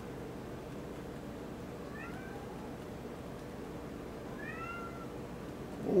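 A domestic cat meowing twice: one short call about two seconds in and another about four and a half seconds in, each gliding in pitch, over a steady low hum.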